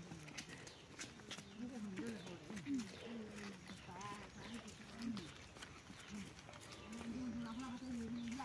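Faint, distant voices calling and talking outdoors, with short scattered calls and a longer held call near the end.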